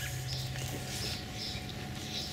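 Quiet outdoor background: a steady low hum with a few faint, short high chirps.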